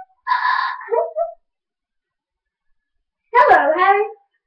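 Two short, high-pitched voice-like cries with bending pitch: one just after the start and one near the end, with silence between.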